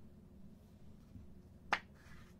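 Hands handling a trading card and a clear plastic card holder, with one sharp click late on over a low steady hum.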